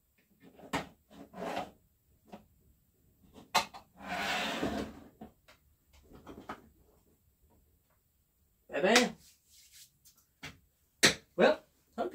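Hand tools and chainsaw parts being handled and put away on a workbench: scattered clicks and knocks, with a longer scraping rustle about four seconds in. A short vocal sound comes near nine seconds, and two sharp clicks follow shortly before he speaks again.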